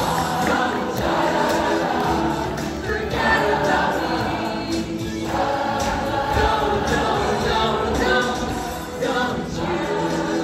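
A large cast of teenage performers singing together in chorus, with lead singers on handheld stage microphones, loud and continuous.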